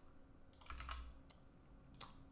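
Faint computer keyboard key presses: a quick cluster of clicks about half a second in, then a couple more near the end.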